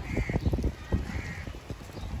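A bird calls twice, two short calls about a second apart, over low knocks and rustling from close by.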